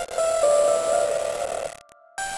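Electro house synth lead playing a few held notes with a bright, gritty, noisy edge, cutting off sharply near the end and followed by a brief fainter tone.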